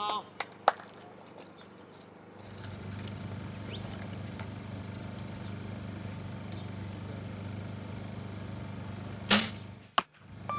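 Compound bow shot: a sharp crack of the string as an arrow is released less than a second in, just after a lighter click. A steady low hum comes in after about two seconds, and a second sharp, short crack comes near the end.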